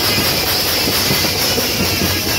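An Indian brass band's horns and drums playing loud and heavily distorted, blurred into a dense, steady wash of noise.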